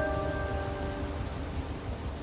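Steel-string acoustic guitar chord ringing out and fading away over the first second, leaving a soft hiss until the next strum.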